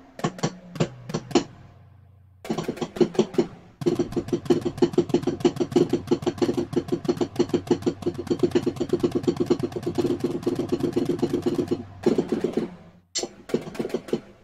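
Electronic music playing: a few separate percussive hits, then after a short pause a fast, steady run of repeated pitched hits that stops about a second before the end, followed by a brief last burst.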